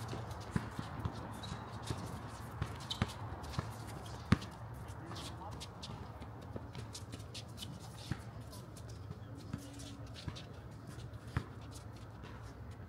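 A basketball game on an outdoor court heard from a distance: scattered sharp knocks of the ball bouncing and footsteps shuffling on the hard surface, with one louder knock a bit over four seconds in.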